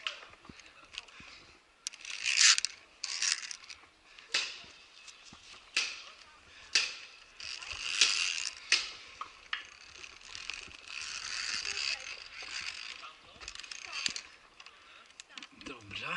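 Metal carabiners and safety lanyard gear clinking and scraping against steel cable and rope while climbing across a rope net, in irregular sharp clicks and short rattles.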